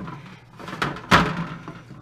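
An aluminum pot of water set down on a steel slab lying on a sheet-metal cart: a lighter knock, then one heavy metal thunk a little over a second in.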